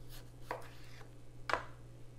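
Kitchen knife cutting through a lime on a cutting board: two sharp strokes about a second apart, the second louder as the blade meets the board.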